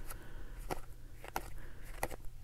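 Paper baseball cards being shuffled through by hand, one card at a time, giving a soft click roughly every two-thirds of a second.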